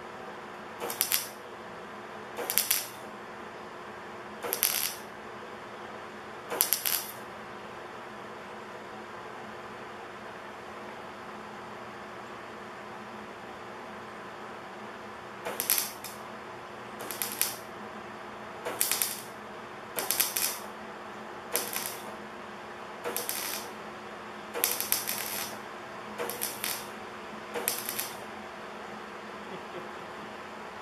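Wire-feed (MIG) welder laying a series of short tack welds: thirteen crackling bursts of the arc, each about half a second long. Four come in the first seven seconds, then after a pause of about eight seconds nine more follow at roughly one-and-a-half-second spacing, over a steady low hum.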